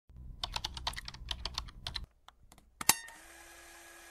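Keyboard-typing sound effect: a fast run of key clicks for about two seconds, then a few scattered clicks and one sharp, louder click near the three-second mark, followed by a faint steady hum.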